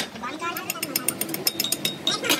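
Rapid, irregular metallic tapping from about half a second in: a hand tool striking a fresh weld bead on a steel pinion shaft, knocking off the welding slag.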